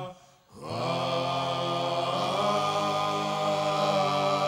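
A group of male voices singing a held chord together, chant-like. It breaks off for about half a second at the start, then comes back sliding up into pitch and holds steady.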